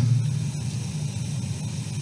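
Steady room noise and hiss picked up by the podium microphone during a pause in the speech, with no distinct event.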